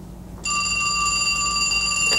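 Landline telephone ringing: one steady ring that starts about half a second in.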